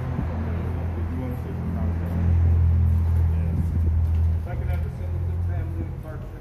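A vehicle engine idling with a steady low hum that grows louder for a couple of seconds in the middle, under faint crowd chatter.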